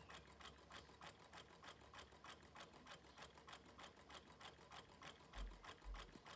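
Kontax low-temperature-differential Stirling engine running, its moving parts giving a faint, rapid, even ticking of about four clicks a second, like a clock running a bit too quickly. Two soft low thumps come near the end.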